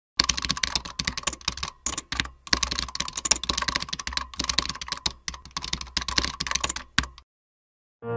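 Computer keyboard typing sound effect: a rapid run of key clicks with brief pauses, stopping about seven seconds in.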